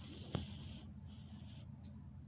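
Soft scratchy rubbing from a wooden A2 drawing board being handled, in two brief strokes, with a small click during the first.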